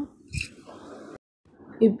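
A single short, soft thump with a brief hiss about a third of a second in, then faint noise and a moment of dead silence at an edit cut.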